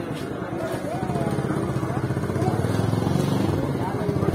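An engine running close by, its low, fast, even throb starting about a second in, with people talking over it.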